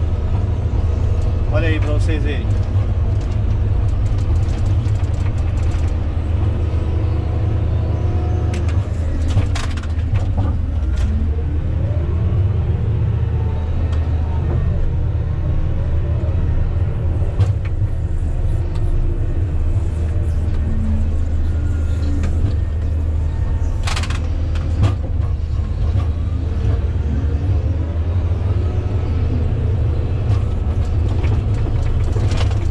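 Komatsu GD655 motor grader's diesel engine running steadily under load as its blade cuts into a dirt road, heard from inside the cab as a deep, constant drone.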